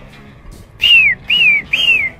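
A person whistling three short notes about half a second apart, each one falling in pitch.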